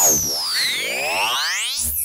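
Electronic title-card sting: whooshing pitch sweeps glide down from high to low while a cluster of rising sweeps climbs, capped by a low hit near the end as the graphic lands. It marks the start of a quiz segment.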